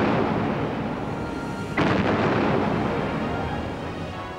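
Heavy naval guns firing: one deep boom about two seconds in, and the fading rumble of an earlier boom at the start, each rumble dying away over about two seconds.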